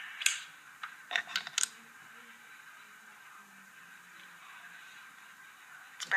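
A few sharp clicks and taps from small objects handled right at the microphone, several within the first two seconds, then only quiet room hiss.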